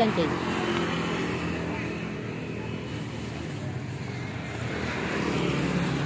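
A motor vehicle engine running steadily in the background, its hum fading about halfway through.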